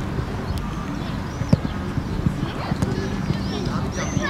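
Outdoor youth football match sound: faint distant shouts of players and a steady low rumble, broken by a few sharp knocks from the ball being kicked.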